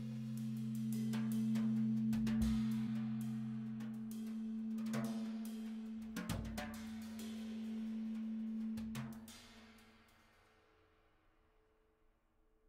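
Drum kit played with sticks, with snare and cymbal strikes over a low held two-note drone. The music dies away about nine to ten seconds in, leaving the room nearly quiet.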